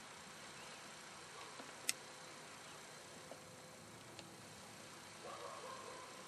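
Faint steady hiss with one sharp click about two seconds in and a fainter tick about four seconds in.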